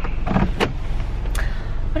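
Low, steady rumble of a car's cabin while driving, with a few short sharp clicks.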